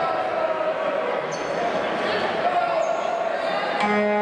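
Basketball bouncing a few times on a wooden court floor, with voices calling out in the hall.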